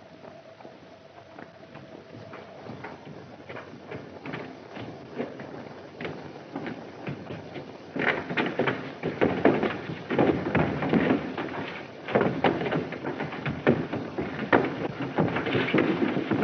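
Footsteps on a staircase: irregular knocks and thuds that grow louder, becoming heavy, dense clattering in the second half.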